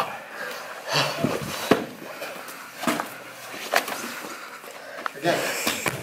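Two grapplers working on a mat: short sharp breaths and exhalations mixed with the scuff and rustle of bodies and gi fabric, coming in brief bursts about a second apart.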